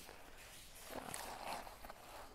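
Faint rustling and crinkling of paper and corrugated cardboard handled by hands, with a few small clicks, as crumpled paper and a rolled strip of soft corrugated cardboard are pressed into a cardboard box.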